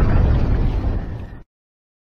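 Explosion sound effect of a channel logo sting: a loud rumbling blast dying away, cut off abruptly about a second and a half in.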